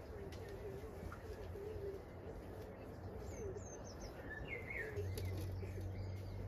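Faint birdsong: a low wavering call over the first two seconds, then a few short high chirps after about three seconds. A low steady hum starts about five seconds in.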